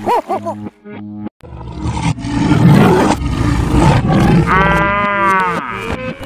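Cartoon animal sound effects over background music: a few short pitched calls, then a long loud noisy roar, then a long pitched call of about a second near the end.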